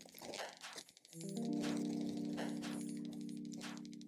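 Background music: a sustained chord of steady tones comes in about a second in and holds. Faint scratches of a graphite pencil drawing an oval on paper lie beneath it.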